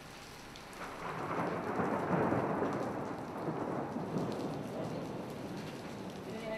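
Rain falling, with a long roll of thunder that swells about a second in and slowly dies away.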